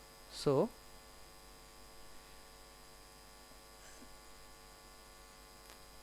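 Faint, steady electrical hum with many evenly spaced overtones, mains hum picked up in the recording, running under a pause in the talk.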